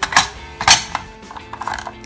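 Stainless-steel pressure cooker lid clicking as it is turned and locked shut: two sharp clicks about half a second apart, then a few lighter ticks. Background music plays underneath.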